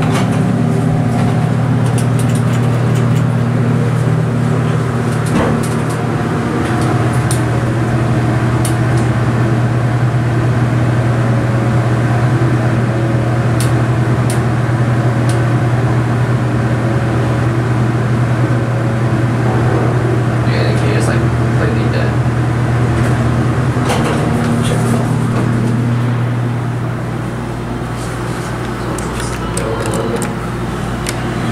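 Dover dry-type hydraulic elevator's pump motor running with a steady low hum while the car rises, with a few clicks along the way. The hum eases off near the end as the car comes to a stop.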